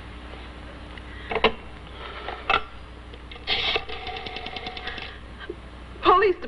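Old desk telephone being handled: two sharp clicks, a louder clatter about three and a half seconds in, then a fast, even run of clicks, about ten a second, for just over a second.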